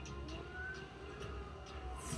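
Film trailer soundtrack playing from a TV in the room: music over a low steady drone, with a couple of sliding tones and a few short sharp hits.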